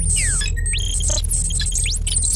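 Electronic sound design for an animated logo outro: a deep steady rumble under quick rising and falling swooshes and bright, glittery high chirps.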